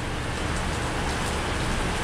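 Heavy tropical downpour, a steady hiss of rain pouring onto pavement and road.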